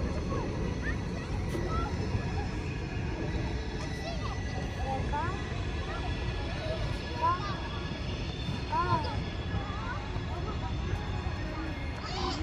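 Distant voices of people outdoors, with short high calls that rise and fall, most of them a little past the middle, over a steady low rumble.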